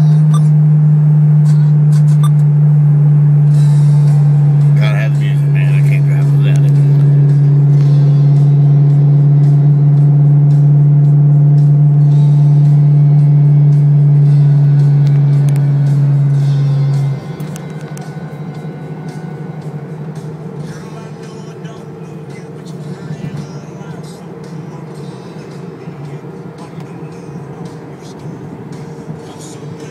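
Mustang engine and exhaust heard from inside the cabin while driving, a loud steady drone at constant speed that falls away sharply about 17 seconds in, as when the throttle is let off, leaving a quieter, rougher running sound.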